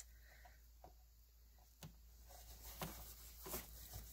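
Near silence, with a few faint soft clicks and rustles of quilting cotton being handled and smoothed by hand.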